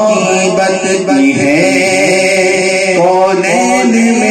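A man singing a naat (an Urdu devotional poem) solo into a microphone, in long, held, ornamented notes that bend slowly up and down.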